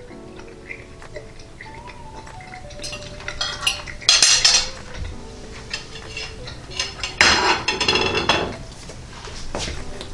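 Metal fork clinking and scraping on a ceramic dinner plate, with two louder clattering moments of dishes being handled about four and seven seconds in. Faint background music runs underneath.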